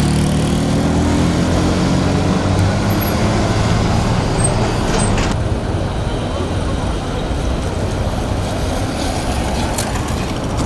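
City street traffic noise: a motor vehicle's engine runs close by at first, its hum fading over the first few seconds, over a steady wash of traffic and people's voices. The sound changes abruptly about five seconds in as the scene cuts to another street.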